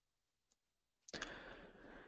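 Near silence, with a faint click about a quarter of the way in and a soft rush of noise in the second half.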